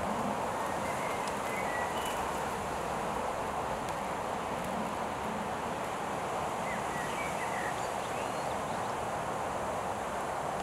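Steady outdoor ambience of wind and rustling foliage, with a few faint bird chirps about a second or two in and again near the end.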